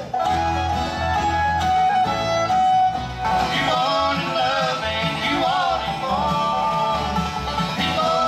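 Live acoustic bluegrass band playing, with fiddle, banjo and guitar. About three seconds in the music cuts abruptly to a different band's tune.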